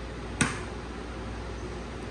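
A single sharp crack of an egg being struck against a cutting board, about half a second in, over a low steady room hum.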